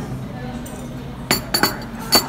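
Two sharp clinks of china about a second and a half in, a ceramic coffee cup being set down, over a murmur of café voices.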